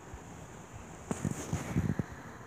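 Faint steady hiss, then about a second of irregular rustling with small knocks in the second half.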